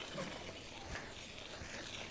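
Faint, quiet sound of a bicycle rolling slowly along a grassy dirt track, a low hiss with a few soft knocks.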